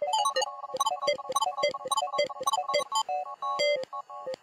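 A synthesizer loop, chopped by a software audio slicer and replayed as a fast rhythmic pattern of short pitched notes. About three seconds in, the pattern changes to longer, held notes.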